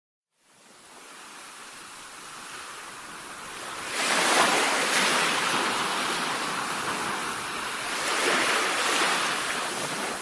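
Ocean waves washing onto a shore. The sound fades in, rises sharply about four seconds in as a wave breaks, and swells again near the end.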